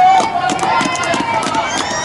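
Players' high voices shouting and calling on the pitch, one long call held at the start, over the patter of running feet and short knocks.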